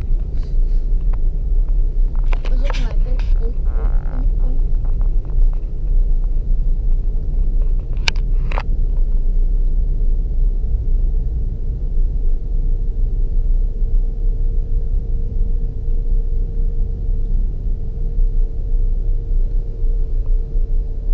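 Land Rover Discovery 3 driving on beach sand, heard from inside the cabin: a steady low rumble of engine and tyres. Two sharp clicks come near the middle, and a thin steady hum joins the rumble about twelve seconds in.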